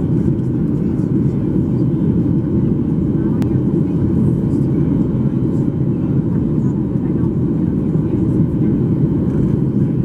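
Steady cabin noise inside a Boeing 737-800 airliner during its descent: the CFM56 engines and the airflow over the fuselage make a constant low rumble that holds an even level throughout.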